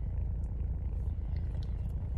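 Steady low rumble of an idling car heard inside the cabin, with faint chewing sounds over it.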